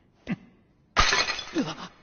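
Stacked tiles smashing in a sudden loud crash about a second in, with crumbling, rattling debris trailing off after it.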